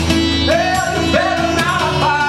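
Live acoustic music: a sung melody of long, gliding notes over a strummed acoustic guitar.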